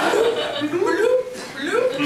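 A person's voice with chuckling and light laughter, including a few rising-pitched vocal sounds.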